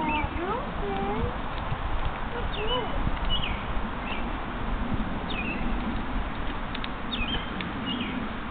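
Small birds chirping, short high chirps every second or so, over a steady outdoor hiss, with the soft footfalls of a horse trotting on sand.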